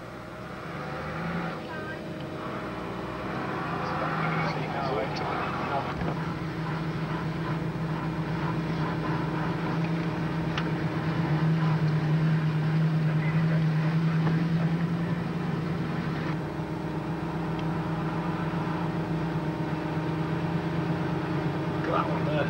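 Range Rover engine running steadily as the vehicle drives through deep snow, heard from inside the cabin; its drone grows louder about halfway through and eases off a few seconds later.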